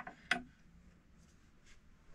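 Two short clicks about a third of a second apart from the crank of a wall-mounted hand-crank grinder with a porcelain body, then quiet room tone.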